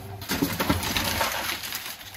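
Grocery packaging and plastic shopping bags rustling and crinkling as items are handled.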